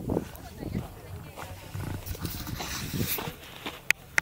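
People's voices talking indistinctly, with two sharp clicks near the end as a hand reaches to the camera.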